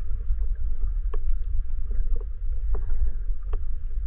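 Muffled underwater sound picked up by a GoPro in its housing while snorkeling: a steady low rumble of water moving against the camera, with a few sharp clicks scattered through it.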